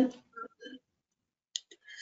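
A student speaking hesitantly over an online lesson connection: the end of a word, then faint broken voice fragments with small clicks, like mouth noises, and a short hiss just before she carries on speaking.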